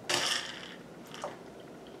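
A spoon scooping dry O-shaped cereal in a ceramic bowl, a brief rattle of the loose pieces and spoon for about half a second, followed by a couple of faint clinks about a second later.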